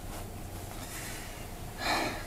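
A person's short, sharp breath out, a huff or sigh, near the end, over quiet room tone with a faint steady hum.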